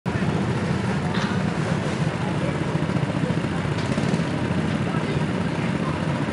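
Several go-kart engines idling together on the starting grid, a steady low running sound.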